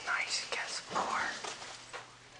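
A person whispering in short, hissy phrases that fade out near the end.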